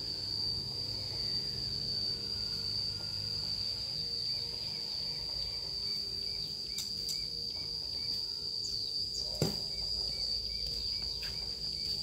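An insect trilling steadily on one high-pitched tone, with a single knock about nine and a half seconds in.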